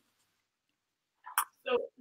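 Dead silence for over a second, then a brief mouth click just before a woman starts speaking near the end.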